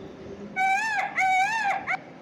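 Indian peafowl (peacock) calling: loud, high, arching calls, two long ones followed by a short third.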